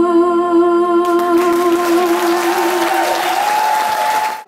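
A young woman singing solo into a microphone, holding one long final note with vibrato that ends about three seconds in. Audience applause starts about a second in and carries on over and after the note.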